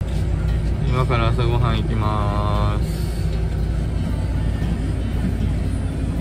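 Steady low rumble of a coach bus's engine heard from inside the passenger cabin, with short bursts of passengers' voices in the first few seconds.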